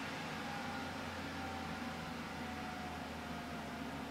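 Steady low hum and hiss of background room noise, with a faint thin tone that drifts slightly lower.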